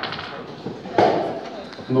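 Low murmur of voices in a large hall, with one sharp knock about a second in; a man starts speaking through the sound system near the end.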